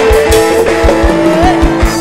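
A live Khmer dance band playing a Twist/Madison-style instrumental passage between sung lines: a lead melody holds long notes, sliding up once near the end, over a steady kick-drum beat of about four a second.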